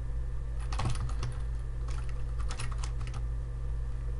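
Typing on a computer keyboard: a quick run of keystrokes about a second in and another from about two to three seconds in, over a steady low hum.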